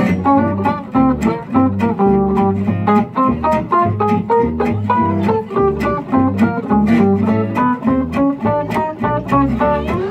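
Gypsy jazz (jazz manouche) quartet playing live: acoustic guitars strumming a steady swing beat, a plucked double bass, and a fast line of short melody notes over them.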